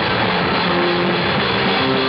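Live rock band playing loudly: drum kit and cymbals driving a dense, steady wall of band sound.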